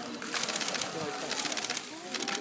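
A bucket of water and live loaches poured into a pool, splashing in two bursts about half a second and a second and a half in. Voices murmur throughout.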